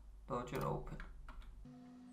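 A few light clicks from a computer mouse and keyboard, after a brief spoken word. A low steady hum starts about a second and a half in.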